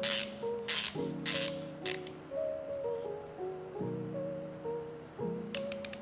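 Soft background music with a slow melody, overlaid by a few short metallic clicks and scrapes near the start and again near the end from the hand grinder's parts being turned and threaded together.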